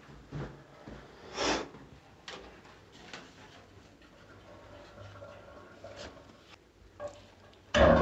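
A few faint, scattered clicks and rustles of hand work at a radiator valve, from tools on the fitting and a plastic rubble bag being handled. The loudest is a short burst about a second and a half in.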